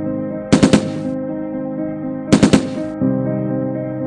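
Two quick bursts of gunfire, about three shots each and nearly two seconds apart, over steady low background music.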